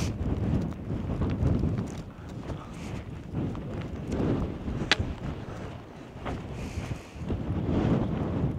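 Wind buffeting the microphone: a low rumble that rises and falls in gusts, with a single sharp click about five seconds in.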